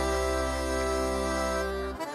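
A stage band holds one sustained chord in a reedy, accordion-like tone over a deep bass note, then cuts it off suddenly at the end.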